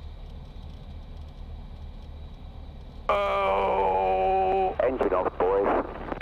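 Light aircraft engine idling with a low steady hum. About three seconds in, a person lets out one long, slightly falling groan of dismay at the crash, followed by a few broken words.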